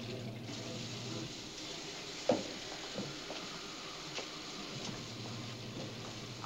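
Washing machines running: a steady hiss of water with a low motor hum that drops out about a second in and returns near the end, and a few light knocks in between.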